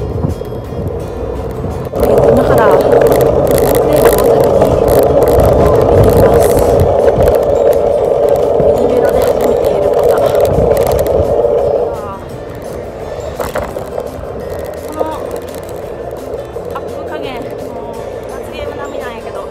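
Loud wind and road noise on the camera microphone of a bicyclist riding through city traffic, mixed with background music. The noise is at its loudest from about two seconds in until about twelve seconds, then eases.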